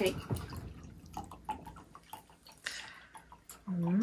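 Pink Ramazzotti aperitivo liqueur being poured from a glass bottle into a wine glass: a faint trickle with drips.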